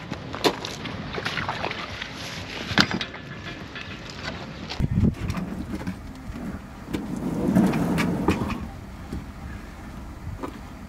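Knocks and scrapes of a rubber lay-flat hose and its plastic elbow fitting being handled and dragged, with wind on the microphone. There are a couple of sharp knocks in the first three seconds, dull thumps about halfway, and a longer rushing scrape later on.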